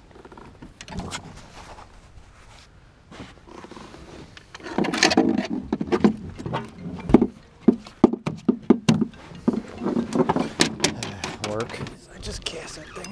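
A man's voice murmuring without clear words, mixed with sharp clicks and knocks as a hooked blue catfish is handled and unhooked on the boat deck.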